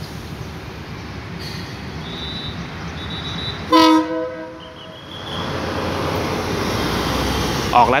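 Horn of a THN-class diesel railcar gives one short, loud toot as the train signals its departure. A broad engine rumble then builds and rises.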